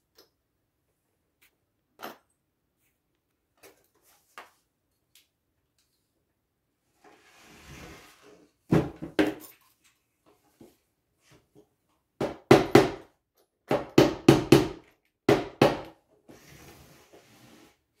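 Wooden dresser drawer knocked and handled while its knob and keyhole hardware are fitted: a few light clicks, a short scrape, then clusters of loud, sharp wooden knocks in the second half.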